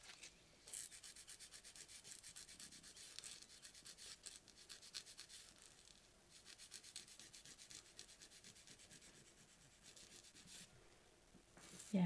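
A 240-grit hand nail file rasping across the edge of a natural thumbnail in soft, rapid back-and-forth strokes, shaping and straightening the nail's side wall. The filing comes in two runs with a short pause about six seconds in, and a brief last flurry near the end.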